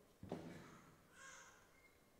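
Handling noise of a clip-on lapel microphone as it is fitted: one sharp knock about a quarter second in, then a brief scratchy rustle, with near silence around it.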